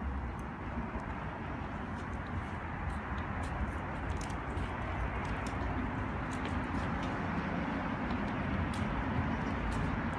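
Steady outdoor background noise, a low rumble under a soft hiss, with scattered light ticks and scuffs.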